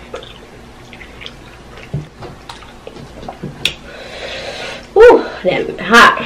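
Close-miked eating of lobster tail: wet chewing and lip-smacking clicks, then a long breathy hiss of air about four seconds in, from a mouth burning from spicy food. A loud, wavering voiced exclamation follows near the end.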